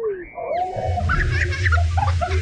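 Rushing, splashing water around a river-raft ride boat with a low rumble, starting about half a second in, with riders' voices over it.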